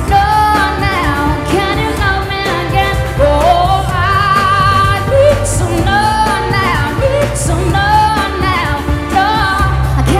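A woman singing a pop song live into a handheld microphone over amplified backing music, her voice carrying long held notes that bend up and down.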